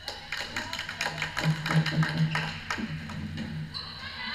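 Rapid clicking and tapping of floorball sticks and the hollow plastic ball during play, over a low hum that swells in the middle.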